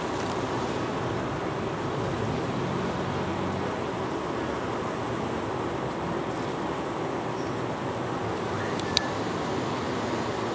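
Steady buzz of a large crowd of honey bees close to the microphone, many wingbeats blending into one even hum. The bees are piling up at their tree-cavity entrance, kept from getting in. A single brief click sounds near the end.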